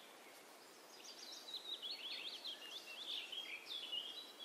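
A small songbird singing a fast run of high chirping notes, starting about a second in, over a faint steady background hiss.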